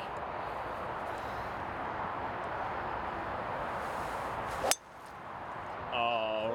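A golf club striking a teed ball: one sharp crack about three-quarters of the way in, the loudest sound, over a steady rush of wind noise that drops away right after the strike.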